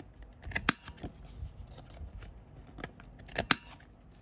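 Corner rounder punch cutting the corners of thick paper cards. There are two sharp snaps about three seconds apart, each coming just after a short crunch as the punch is pressed down.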